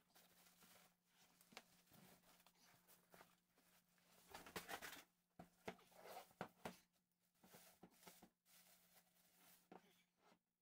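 Faint rustling and crinkling of a plastic bag, with scattered light clicks, as a boxed inverter is lifted out and unwrapped. The handling is busiest from about four to seven seconds in.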